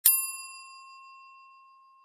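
Notification-bell 'ding' sound effect, struck once. Its high overtones die away quickly while the main tone rings on and fades out over about two seconds.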